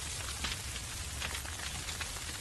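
Bush fire burning through dry grass and scrub: a steady crackling hiss with a few faint snaps.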